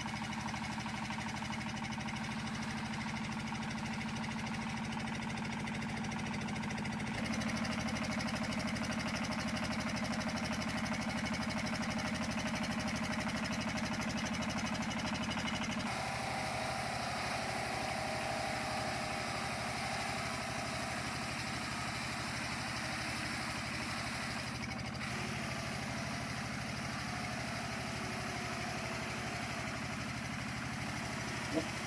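Stationary engine driving a sago-grating machine through a flat belt, running steadily as split sago trunk is grated into pulp. Its steady note shifts slightly about seven seconds in and again around sixteen seconds.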